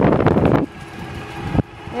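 Wind buffeting the phone's microphone and rolling noise from scooters being ridden along a sidewalk. It cuts off abruptly about two-thirds of a second in, leaving a faint steady hum, and a single click comes near the end.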